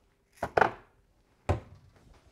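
A glass jar set onto a kitchen cupboard shelf with a couple of knocks about half a second in, then the cupboard door shut with a single sharp knock about a second later.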